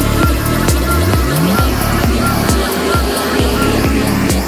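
Electronic dance music played over a festival sound system: a steady four-on-the-floor kick drum at about two beats a second, with a run of short rising synth sweeps about a second in.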